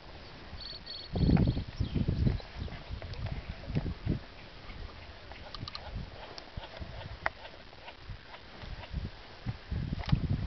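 Handling noise close to the microphone: irregular dull knocks and rustles, loudest between one and two and a half seconds in, with a short run of high clicks just before.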